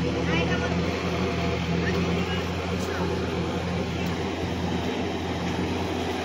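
Sonalika DI 50 RX tractor's diesel engine running steadily under load as the tractor works through a flooded paddy field's mud. Its hum stays even, with no revving.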